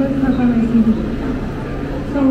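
People talking in a crowd, with one voice nearest and loudest in the first second, over the general noise of people milling about.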